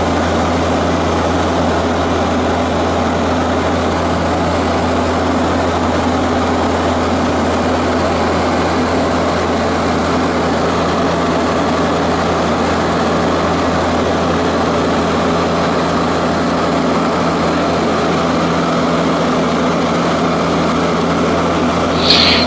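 Propeller engines of a seaplane in flight, a steady, unchanging drone heard from inside the cabin.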